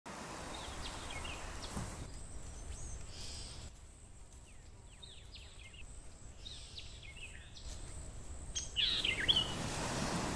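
Outdoor ambience of birds chirping over a steady background hiss, with a louder burst of calls near the end.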